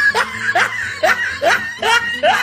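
A person laughing in a quick run of short rising bursts, about five in two seconds.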